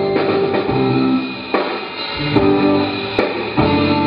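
Live rock band playing an instrumental passage: electric guitar, bass guitar and drum kit.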